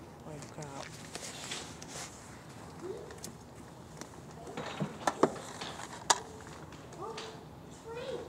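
Indistinct voices talking in short snatches, with a few sharp knocks about five and six seconds in.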